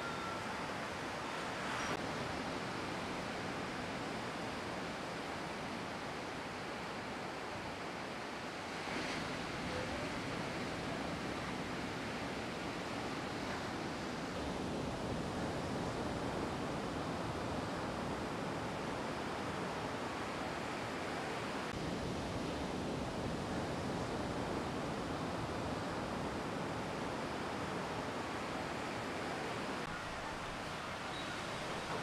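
Ocean surf breaking and washing ashore: a steady rush of wave noise whose tone shifts slightly a couple of times.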